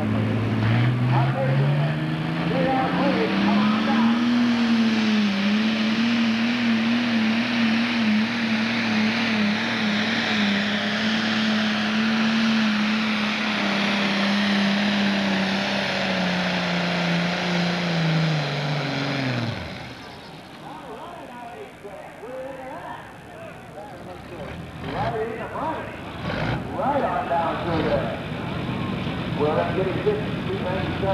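Pro stock pulling tractor's turbocharged diesel engine at full throttle, hauling the weight sled. The revs climb over the first few seconds, hold with a slight waver, then fall away and stop about twenty seconds in as the pull ends, leaving crowd voices.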